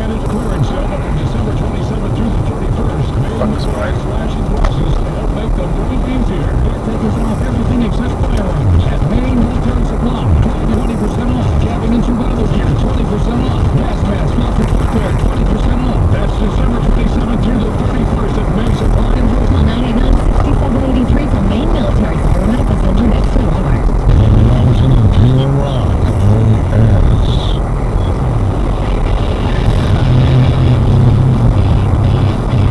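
Car cabin sound while driving: steady engine and road rumble with a car radio playing voices and music over it.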